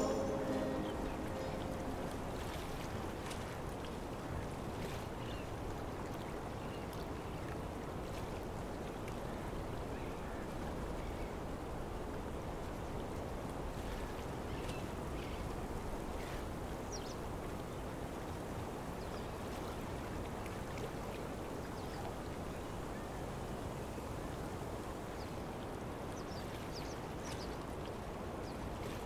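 Steady low rushing outdoor ambience with no music or voices, with a few faint, brief high chirps scattered through it.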